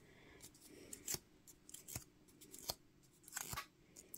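A few faint, crisp clicks and rustles of stiff die-cut cardstock being handled and bent into shape by hand.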